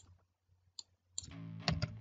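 A sharp mouse click at the start and a fainter one just under a second in, then soft background music comes in a little past one second.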